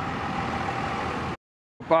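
Steady street traffic noise with a vehicle engine running, which cuts off suddenly about a second and a half in.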